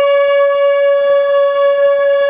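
Woodwind quintet playing contemporary chamber music: one wind instrument holds a single long, steady note, with quick short taps sounding around it.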